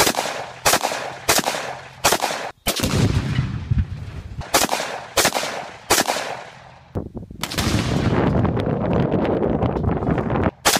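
AR-15 rifle firing single shots in quick succession, roughly one every two-thirds of a second. The shots break off twice for longer stretches of heavy, low rumbling noise.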